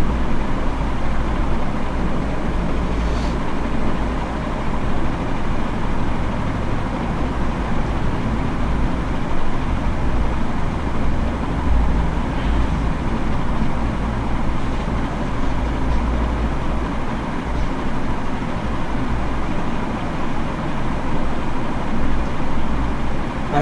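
Steady low rumbling background noise with a faint steady hum, unbroken and with no distinct events.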